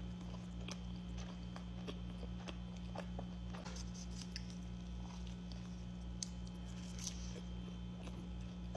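Close-up chewing of a bite of slider cheeseburger: small wet mouth clicks and smacks scattered throughout, over a steady low hum.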